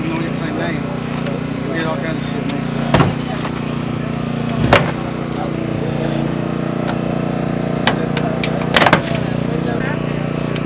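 Small engine of a hydraulic rescue tool's power unit running steadily, with sharp cracks as the tool works on the car door: one about three seconds in, one near five seconds and a quick double near nine seconds.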